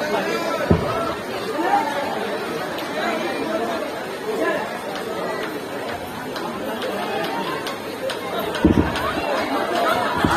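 People talking and chattering, with two brief dull thumps, one about a second in and one near the end.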